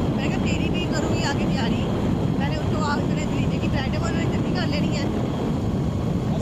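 Wind rushing over the microphone of a moving motorbike, mixed with the bike's running and road noise as a steady low rumble.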